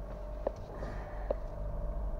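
Car cabin with a steady low engine rumble as the car rolls slowly over a dirt road, a faint steady tone in the background and two light clicks.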